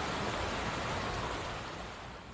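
Steady rushing noise of heavy rain and floodwater, fading slightly toward the end.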